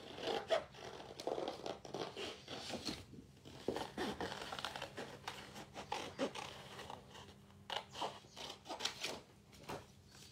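Small scissors fussy cutting around printed flowers on a sheet of scrapbook paper: an irregular run of quick snips with the paper rustling as it is turned.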